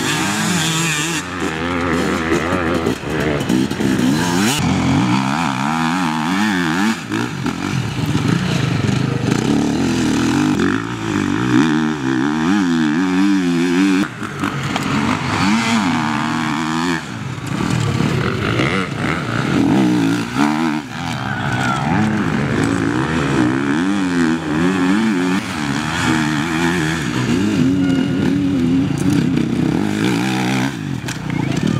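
Enduro motorcycles ridden hard on a dirt special test, engines revving up and down through the gears as they pass, several bikes in turn.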